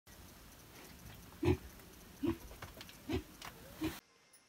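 Young pig grunting four times as it roots and feeds, short grunts spaced less than a second apart.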